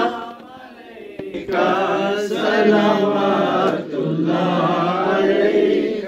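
Several men chanting together in an Islamic devotional recitation, holding long drawn-out notes; the voices fall away for about a second near the start, then swell again and carry on strongly.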